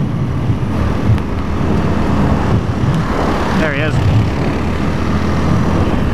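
Suzuki DR200's single-cylinder engine running steadily at cruising speed, with wind rushing over the helmet-mounted microphone.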